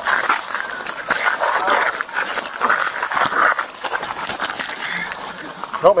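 Car fire crackling and hissing, with close rustles and knocks picked up by a body-worn camera.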